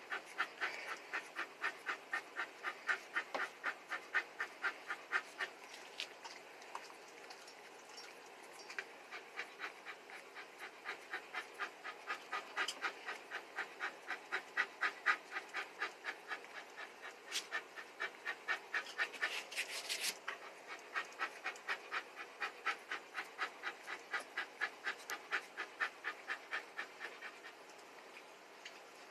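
Miniature Australian shepherd panting steadily, about three breaths a second. The panting eases off for a few seconds about a quarter of the way in, then picks up again.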